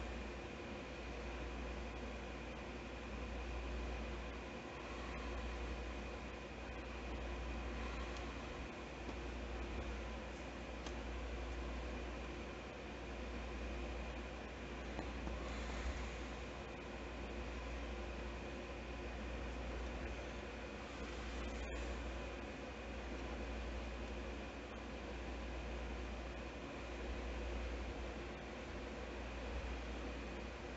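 Faint steady hum and hiss of room noise, with brief soft handling sounds of plastic paint bottles near the start and about halfway through.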